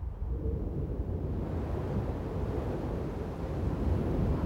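Steady rushing wind with a low rumble beneath it.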